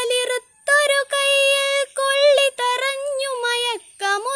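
A woman singing a Malayalam poem solo into a close microphone: long held notes with a wavering pitch, in short phrases broken by brief pauses for breath.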